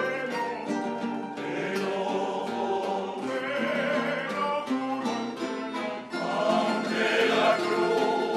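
Male choir singing over an ensemble of acoustic guitars and other plucked strings, a folk song with strummed and picked accompaniment. The voices swell near the end.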